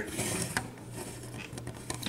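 Plastic parts of a transforming toy robot clicking and rattling faintly as they are handled and adjusted, with a few small clicks about half a second in and near the end.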